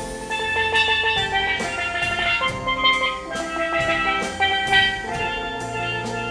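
Live band playing an instrumental: bright melodic notes from keyboard and guitars over a drum kit, with cymbal strokes.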